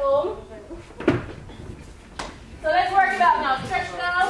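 A dull thump about a second in as a dancer comes down out of a headstand onto a wooden studio floor, and a lighter knock a second later. Then women's voices talking.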